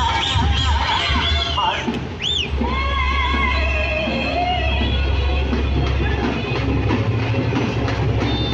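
Loud procession music with drums and a high melody that glides up and down, over the voices of a crowd.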